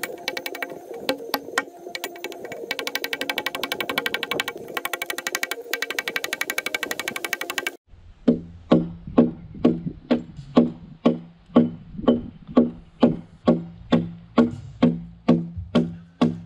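Music for the first half; after a sudden change about eight seconds in, steady blows of a hewing axe on a timber log, about two a second, each knock ringing briefly.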